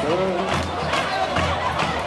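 A carnival samba sung by a voice over a samba bateria's drums keeping the beat.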